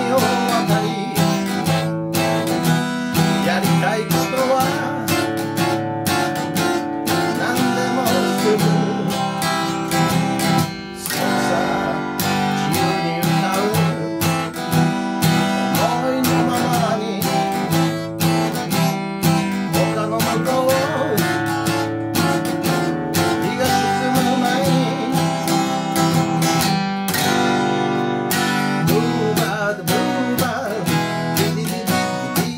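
Steel-string acoustic guitar, its finish stripped and oiled with perilla oil, strummed steadily in chords while a man sings along.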